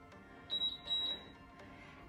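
Gymboss interval timer beeping: a high, steady beep about half a second in, lasting under a second, signalling the end of a 50-second exercise interval.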